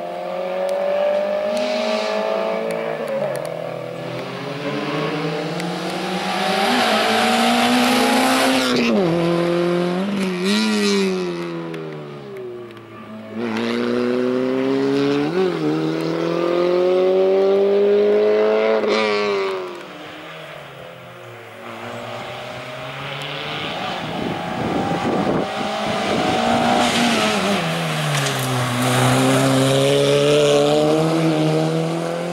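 Peugeot 106 slalom car's engine revving hard and then easing off again and again as it accelerates and brakes through the cones, the pitch climbing and then dropping sharply every couple of seconds. The engine goes quieter for a few seconds after the middle, then grows louder again near the end.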